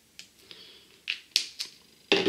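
Felt-tip whiteboard marker drawing on a whiteboard: a run of short squeaks and taps of the tip against the board, the sharpest about a second and a half in.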